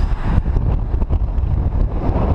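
Wind buffeting the microphone: a loud, uneven low rumble that rises and falls with the gusts.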